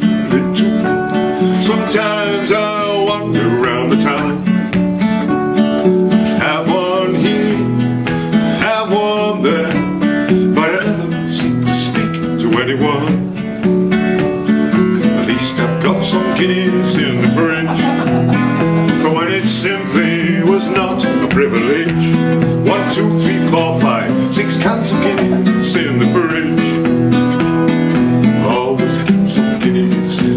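Two acoustic guitars strummed and picked together, playing a steady folk song accompaniment.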